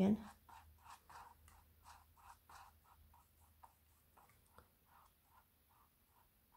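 Fluffy mop brush sweeping back and forth over wet acrylic paint on a canvas, blending it out: a faint, steady run of soft brush strokes, about three a second.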